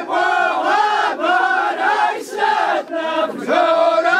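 A group of men chanting together in Amazigh ajmak sung poetry. The voices hold phrases about a second long that bend in pitch, with short breaks between them.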